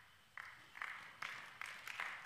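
A quiet run of about five hand claps at a steady pace, a little over two a second.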